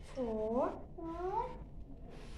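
A young child's voice making two drawn-out, sing-song vocal sounds, each swooping up in pitch.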